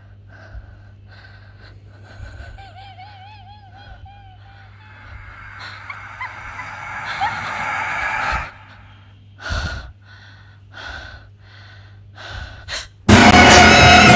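A woman's frightened gasping breaths, short and repeated. About a second before the end a sudden, much louder screeching noise cuts in.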